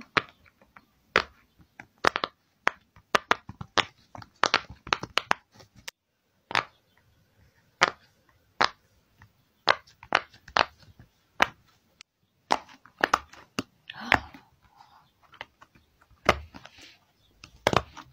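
Silicone push-pop fidget toy (a pop-it) with its bubbles pressed in by fingers: irregular runs of short, sharp pops broken by brief pauses.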